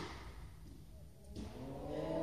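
Echoing tail of a tennis serve's racket-on-ball hit in a large indoor tennis hall. A fainter knock comes about a second and a half in. Voices begin to rise near the end.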